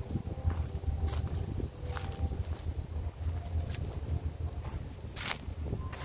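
Strong sea wind buffeting the microphone, a gusty low rumble throughout, with scattered sharp clicks and a thin steady high tone over it.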